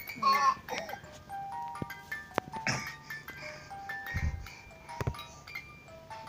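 Electronic toy tune played in simple held beeping notes, stepping from pitch to pitch, from a baby's musical toy. A baby's short squeals come near the start and again about halfway, with a few knocks and a low thump.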